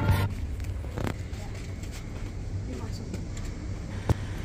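Background music that stops just after the start, followed by a steady low hum with a single knock about a second in.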